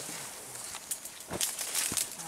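Footsteps on dry leaf litter and palm fronds, with two sharper crunching steps in the second half.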